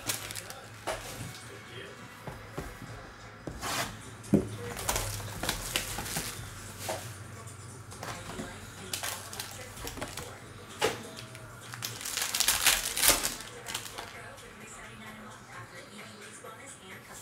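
A trading-card box being torn open and the cards pulled out: cardboard and wrapper crinkling and tearing, with scattered handling clicks. The rustling is busiest about twelve to thirteen seconds in.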